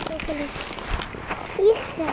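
Skis sliding and scraping over packed snow, with a few short crunching knocks, under brief snatches of speech.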